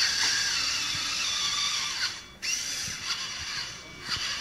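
Small geared electric motors of a VEX robot whining as its chain lift moves a cube. The whine shifts in pitch, stops abruptly about two seconds in, then comes back fainter for about a second.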